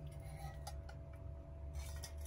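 A small electric fan's faint steady hum, with a couple of soft ticks.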